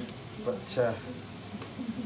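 A man's brief spoken words over the faint sizzle of onions, garlic and ginger frying in a steel pot, with a small click about one and a half seconds in.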